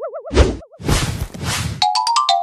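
Cartoon sound effects: a wobbling boing-like warble fades out in the first half second, followed by two bursts of noise, and a bell-like ding that starts ringing near the end.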